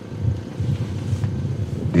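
Low, steady rumble of outdoor background noise, with no clear single source.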